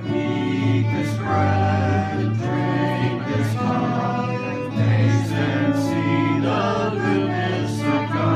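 Live praise band playing a slow worship song: voices singing together over guitar, with long held bass notes underneath.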